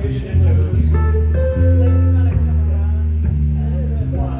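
Live band's bass guitar and electric guitar playing held notes, the bass moving to a new note about every second, with higher guitar notes coming in about a second in.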